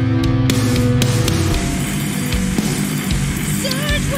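Dark, heavy spoken-word metal track playing: a sustained low bass part drops away about a second in, leaving a thinner band texture with drum and cymbal hits and distorted guitar low in the mix.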